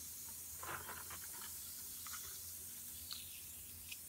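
Bath bomb fizzing faintly as it dissolves in a tub of water, with a few soft splashes from a hand moving through the water.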